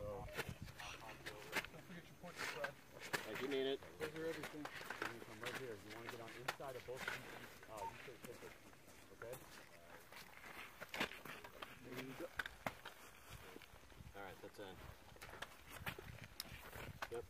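Faint, indistinct talk among several people, with scattered sharp clicks and knocks from gear and footsteps.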